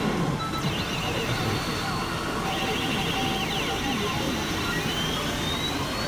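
Pachinko parlour din: the steady, dense noise of many machines running, with a pachinko machine's electronic effects and voice lines over it during a reach presentation with a PUSH-button prompt, which the player takes as about 90% sure to hit. A rising electronic tone comes near the end.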